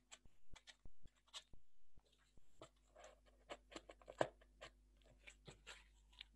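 Faint, scattered taps, clicks and light scraping of cardboard pieces being handled and pushed into slots in a cardboard frame.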